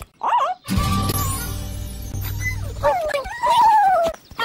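Cartoon animal character voices over background music: a short pitched call near the start, a low rumbling noise through the middle, then a long wavering call in the last second.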